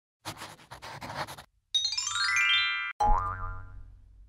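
Short cartoonish intro jingle. About a second of scratchy rustling comes first, then a bright tone slides upward like a boing, and then a ringing note sounds and fades out.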